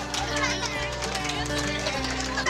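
A music track with a steady bass line, mixed with many young children's voices shouting and cheering.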